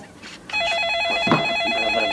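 Telephone ringing with an electronic warbling trill, a rapid alternation between two pitches, starting about half a second in.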